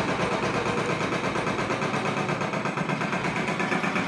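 A motor or engine running steadily, with a fast, even pulse.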